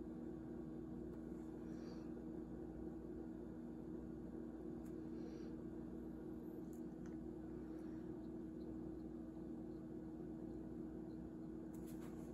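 Quiet indoor room tone carrying a steady low hum, with a few faint soft ticks and light rustles here and there.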